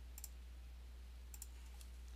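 A few faint computer clicks, made while picking the slideshow's pen tool, over a low steady hum.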